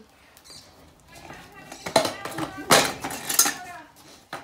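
Ryan Williams stunt scooter hitting and clattering on concrete during a missed heel whip. Three sharp metallic impacts come about two, two and a half, and three and a half seconds in.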